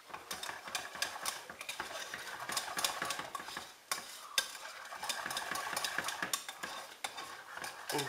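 Wire balloon whisk beating scrambled eggs in a stainless steel saucepan, with quick, rhythmic scraping and clinking of the metal wires against the pan, briefly pausing about four seconds in. Milk has just been poured in and is being whisked into the lemon-and-herb egg stuffing.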